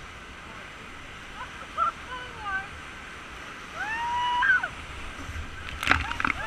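Whitewater rapids rush steadily around an inflatable raft while rafters shout over the noise. The loudest, longest yell comes about four seconds in, and a sharp splash comes near the end.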